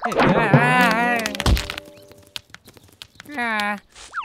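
Cartoon crocodile character yelling as he slips on a banana peel and is thrown into the air, then a heavy thud as he hits the ground about a second and a half in, with a steady tone lingering briefly after. Near the end comes a short vocal sound from the fallen character.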